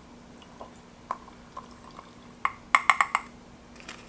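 A plastic measuring cup tapping against the rim of a glass mason jar to knock boric acid powder into it. A few light clicks come first, then a quick run of about five sharper, ringing taps past the middle, and a last tap near the end.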